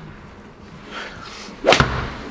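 A golf club swung at full speed: a short whoosh builds near the end and ends in a sharp crack as the clubhead strikes the ball.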